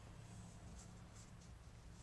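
Faint, brief strokes of a watercolour brush on sketchbook paper, over a low steady room hum.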